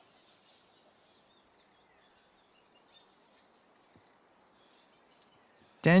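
Faint outdoor ambience with distant birds chirping now and then. A man's voice starts speaking near the end.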